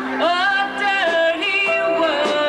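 A woman singing live at a microphone, her voice rising into a note just after the start and holding it, over acoustic guitar and band accompaniment.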